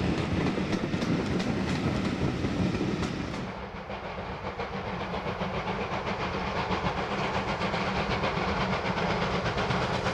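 Coaches rolling past close by, their wheels clicking rhythmically over the rail joints. About three and a half seconds in this gives way to the rapid, regular exhaust beats of two GWR prairie tank steam locomotives double-heading the train, working toward the listener and growing louder.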